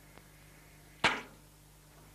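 A single loud gunshot about a second in, a sharp crack with a short echoing tail, from a rifle fired out of the firing position.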